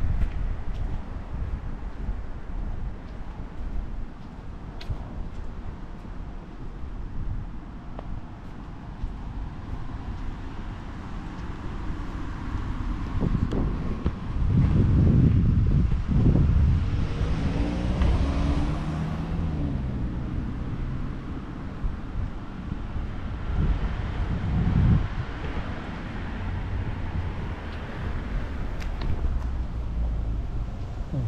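Wind buffeting the microphone over outdoor street noise, with a louder stretch about halfway through as a motor vehicle goes by, its engine pitch shifting as it passes.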